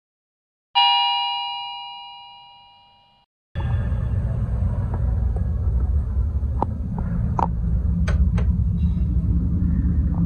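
A single bell-like chime over the intro card, ringing with several overtones and fading away over about two and a half seconds. After a brief silence, a steady low rumble of room noise begins, with a few faint clicks.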